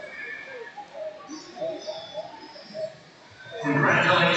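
Indistinct raised voices of people calling out in a sports hall, with a much louder burst of shouting starting near the end.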